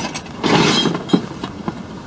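Scrap metal being handled and pushed into a car: a scraping rustle for about half a second, then a single sharp knock.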